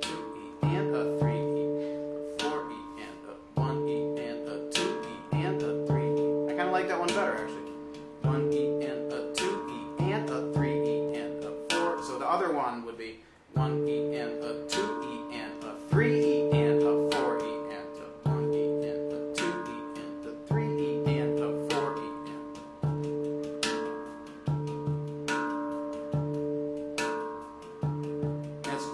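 Handpan played in a steady, repeating groove: ringing low notes struck in a regular pattern, with quick light finger taps filling the gaps between them. There is a short break about thirteen seconds in before the groove picks up again.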